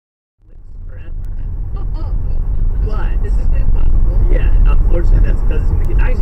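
A car's low, steady road and engine rumble heard from inside the cabin, starting abruptly after a moment of silence and swelling over the first couple of seconds. Voices talk in the car from about three seconds in.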